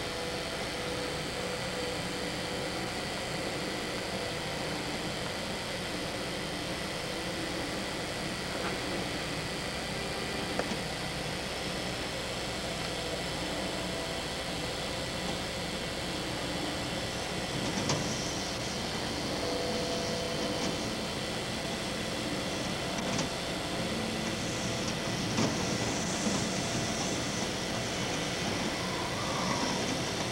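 Hurricane wind and heavy rain: a steady rushing noise that grows slightly stronger in the last few seconds, with a few faint knocks.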